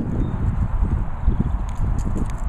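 Low, uneven rumble with irregular soft thumps on a handheld camera's microphone, from wind and handling.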